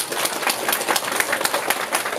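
Audience applauding: dense, irregular clapping straight after the music stops.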